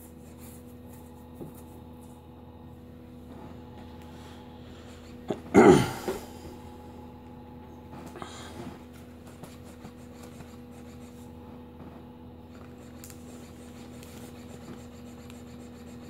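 A laptop CD-ROM drive reading and seeking as files are copied off a disc: a steady hum with faint irregular clicking and ticking. One brief loud noise comes about five and a half seconds in.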